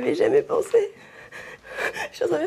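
A woman's high, wavering voice with gasping breaths, without clear words, in the first second, then quieter breathing.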